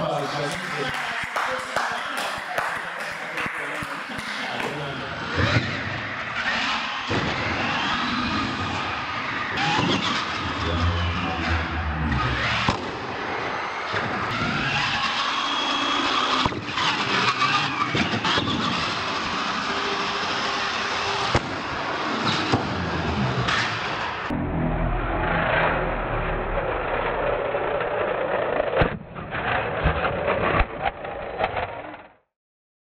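Radio-controlled monster truck motors whining up and down in pitch as the trucks accelerate and brake on a smooth concrete floor, with occasional sharp clatters as they land jumps and tip over. People talk in the background.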